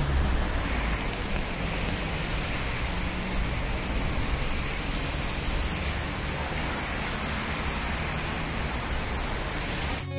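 A steady, even hiss of outdoor noise that does not change for the whole stretch.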